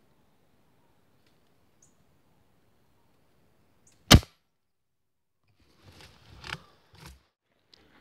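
A single rifle shot about four seconds in, one sharp crack with a short tail. Rustling and knocks follow for about a second, starting about six seconds in. Faint bird chirps come before the shot.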